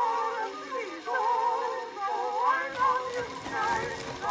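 Early 1920s acoustic gramophone recording of vocal music with singing in wide vibrato. The sound is thin and narrow, with little bass.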